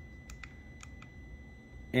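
Soft clicks from the motorcycle's handlebar menu-switch buttons, about five quick presses in the first second or so, as the dashboard menu is stepped through.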